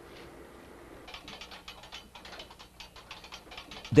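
Masonry work sounds: a rapid, irregular run of light clicks and taps, starting about a second in.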